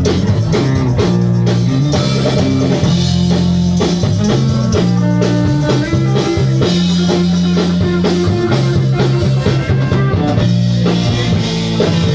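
Rock band playing live, loud and continuous: electric guitars and bass over a steady drum-kit beat, a rough club recording of an early-1980s garage-pop song.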